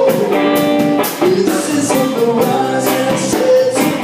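Live band playing a blues-rock song: two guitars over a drum kit, with held guitar notes and a steady beat of drums and cymbals.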